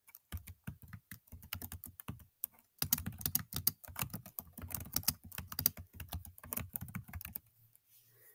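Fast typing on a computer keyboard: a dense run of key clicks with a short pause about two and a half seconds in, stopping just before the end.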